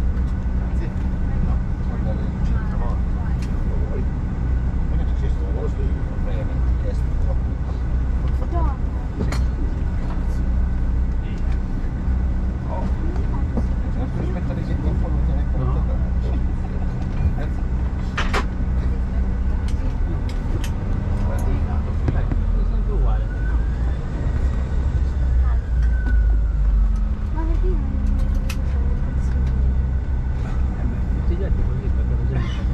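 Cabin noise inside a Bombardier CRJ1000 taxiing: the rear-mounted General Electric CF34 jet engines drone steadily at low taxi power over a deep rumble, which grows heavier during the second half.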